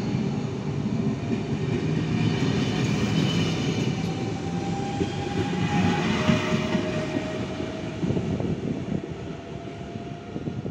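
Double-deck regional electric train running past the platform close by: a steady rumble of wheels on rails, with a faint whine that falls a little in pitch around the middle. It eases off in the last couple of seconds.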